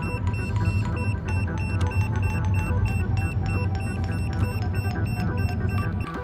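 Handheld EMF meter beeping in a fast, even string, about three short high beeps a second, with a steady low rumble and background music underneath.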